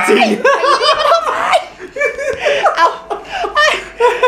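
Several people laughing hard together, loud hearty laughter in quick repeated ha-ha pulses, dipping briefly about halfway through and then picking up again.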